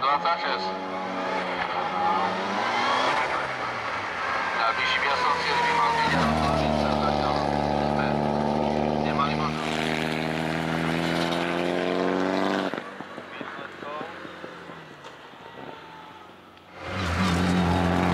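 Turbocharged four-cylinder of a Mitsubishi Lancer Evolution IX racing uphill at full throttle, its pitch climbing and falling through gear changes, then held at high revs. About thirteen seconds in it drops away quieter and fades, and it comes back loud near the end.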